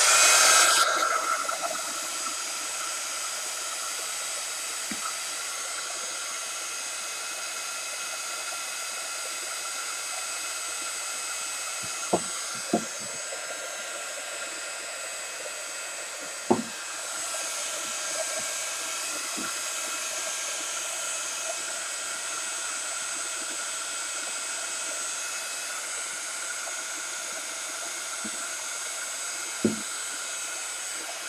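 Electric heat gun running steadily, a loud fan blowing with a constant whine, heat-setting sprayed colour. It is louder for about the first second, and a few short knocks come around the middle and near the end.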